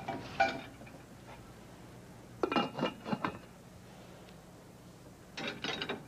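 Light clinks and taps of a serving dish and utensils as tomato roses are arranged on a platter of rice, in three brief clusters: about half a second in, around two and a half to three seconds, and near the end.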